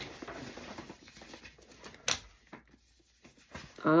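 Folded paper slips rustling faintly as a hand rummages through them in a hat box, with one sharp click about two seconds in.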